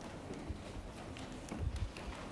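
Quiet room noise with a few faint, low thumps near the end.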